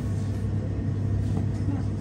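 Steady low hum and rumble inside an observation-wheel capsule as the wheel turns.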